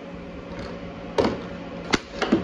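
Hard plastic clacks as an air hockey mallet knocks a small 3D-printed plastic figure across an air hockey table. There are two sharp hits, one a little past the middle and one at the very end.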